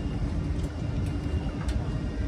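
A steady low mechanical rumble with a faint constant hum, and a few faint metallic clicks from hand tools on the front suspension.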